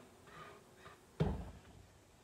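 A silicone spatula scraping a lemon-peel and sugar mixture out of a bowl into a stockpot, faint, with one dull knock a little past a second in.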